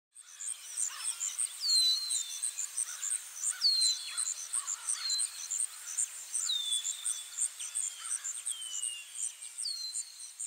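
Bird ambience: a bird gives short falling whistled calls every second or two over a steady, rapid high chirping of about three pulses a second.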